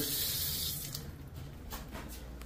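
Bathroom faucet water running into the sink, shut off a little under a second in; the hiss stops, leaving low room noise with a faint click near the end.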